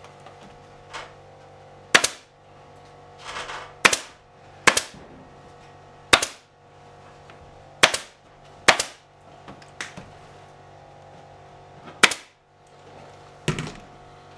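Pneumatic staple gun firing staples through burlap into a wooden chair seat frame: about eight sharp shots, irregularly spaced one to two seconds apart.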